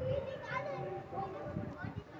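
Faint voices of people talking, children's voices among them, with no single clear speaker.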